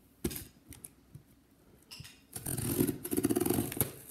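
Hands handling a plastic-wrapped cardboard shipping box: a sharp knock about a quarter second in, a few light taps, then about one and a half seconds of rapid crinkling and scraping of the plastic wrap under the hand near the end.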